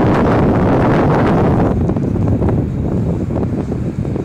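Wind buffeting the microphone, a loud irregular rumble that eases somewhat after about two seconds.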